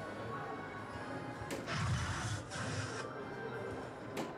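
Soft-tip dart striking an electronic dartboard: a sharp click about a second and a half in, followed by about a second of noise from the machine, with music playing under it.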